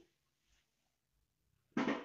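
Near silence between a woman's spoken phrases: her voice trails off at the very start and resumes near the end.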